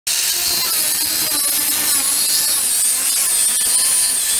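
Angle grinder cutting through a motorcycle's exhaust pipe: a steady high-pitched whine over a harsh grinding hiss, the pitch dipping slightly about halfway through as the disc bites.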